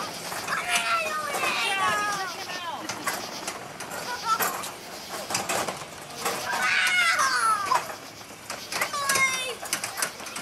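Children's voices: excited, high-pitched shouts and squeals in several bursts, with no clear words.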